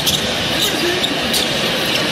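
Basketball game play on a hardwood court: the ball bouncing and a few sharp court noises over steady arena crowd noise.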